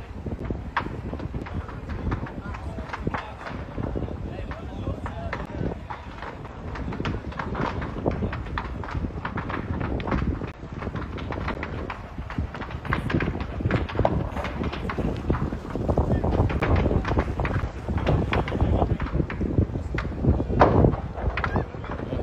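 Indistinct voices in the background over a continuous outdoor rumble, with many short, irregular knocks and crackles scattered through it, denser in the last few seconds.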